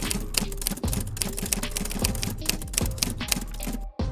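Typewriter sound effect: a rapid, unbroken run of keystroke clacks that stops just before the end.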